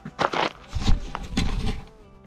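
Wind buffeting the microphone in uneven low gusts, with a few short scratchy rustles early on.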